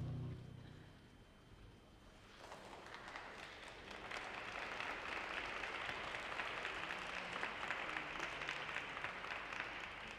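The last of the program music fades out, then after a short lull an audience starts applauding about two and a half seconds in and keeps clapping steadily.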